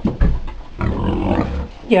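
A domestic pig grunting close by: a short low grunt just after the start, then a longer, rough grunt about a second in.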